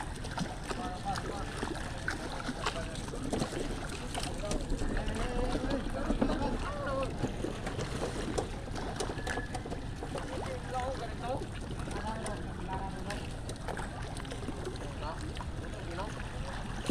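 Indistinct voices of several people talking in the background, over a steady low rumble of wind on the microphone, with occasional small knocks.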